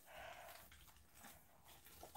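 Near silence: room tone, with a faint brief sound in the first half-second.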